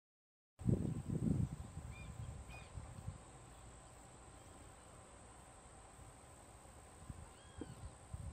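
Outdoor wetland background with a few faint, short bird chirps and one brief rising-and-falling call near the end. Low rumbling on the microphone about the first second in is the loudest sound.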